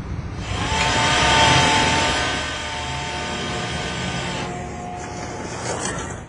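Shipboard cable winch running: a steady mechanical whine over a broad hiss, loudest early and easing off about four and a half seconds in.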